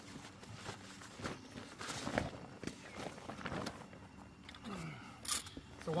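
Rustling and flapping of a camping cot's heavy Oxford cloth bed as it is unfolded and spread out by hand, with scattered light handling knocks.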